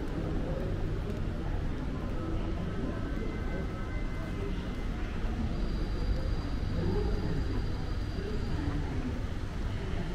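Airport terminal concourse ambience: indistinct chatter of passing travellers over a steady low rumble. Faint thin tones sound briefly in the middle, and a faint high tone is held for a few seconds in the second half.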